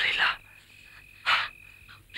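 Night-time insect drone, one thin steady high-pitched tone, broken by two short loud breathy bursts: one at the start and one just over a second in.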